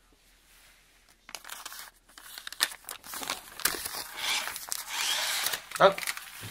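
Sticky-note paper being handled and pulled off a small toy car: irregular crinkling and rustling with small clicks, starting about a second in after a near-silent moment.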